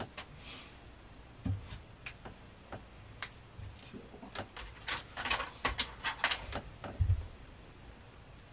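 Small clicks and taps from handling plastic paint bottles and tools on a workbench, with a cluster of quick ticks about five seconds in and a dull thump near the end.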